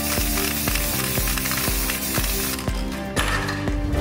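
Aerosol can of copper grease spraying in a long hiss that stops about two and a half seconds in, followed by a second, shorter burst about three seconds in, over background music with a steady beat.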